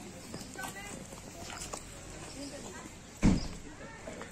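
Faint voices of people chatting in the background, with one sudden loud, dull thump a little over three seconds in.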